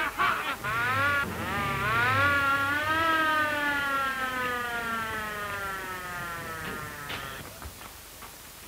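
Police car siren winding up over about two seconds, then slowly winding down and fading away, with the car's engine rumbling under it at the start.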